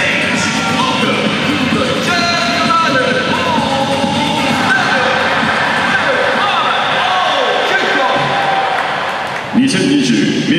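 Music playing over a stadium's public-address system, with a voice over it; it breaks off briefly near the end.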